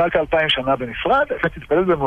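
Speech only: a man talking in Hebrew.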